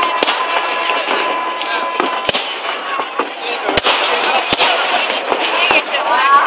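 Aerial fireworks shells bursting in an irregular run of sharp bangs, roughly one or two a second.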